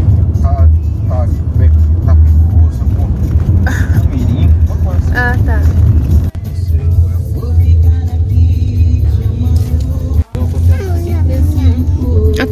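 Steady low road and engine rumble inside a moving Chevrolet car's cabin, with music and singing over it. The sound drops out briefly twice, about six and ten seconds in.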